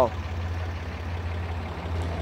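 The Ram 3500's 6.7-litre Cummins diesel idling: a steady low rumble.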